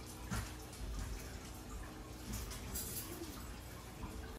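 Faint dripping and light splashing of braising liquid as tender braised pork ribs are lifted out of an enameled cast-iron pot, with a few soft utensil clicks.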